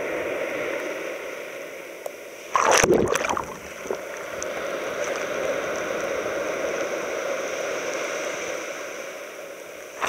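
Small waves breaking and washing on a sand beach at the water's edge, a steady surf wash with one louder, close surge of water about two and a half seconds in that lasts about a second. A steady high buzz of Kuroiwa tsukutsuku cicadas (Meimuna kuroiwae) runs over the surf.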